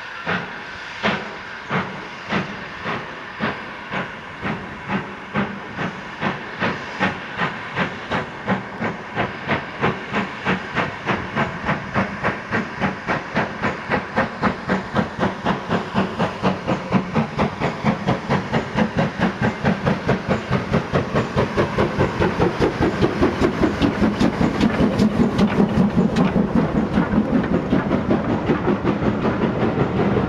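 Steam tank locomotive pulling a train of coaches away. Its exhaust chuffs quicken from about two a second to a fast, even beat and grow louder as it approaches. The coaches roll past near the end.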